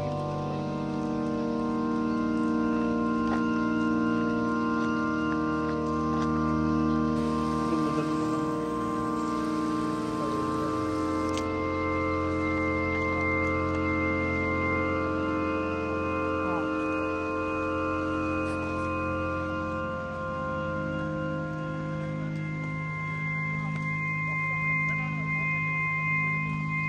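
Background music of slow, sustained organ-like chords, each held for several seconds before shifting to the next.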